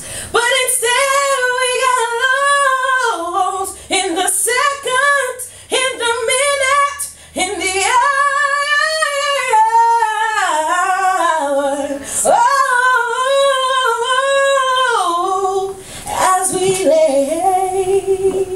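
A woman singing solo R&B a cappella, with no instrumental backing: long held notes with vibrato and sliding runs between phrases.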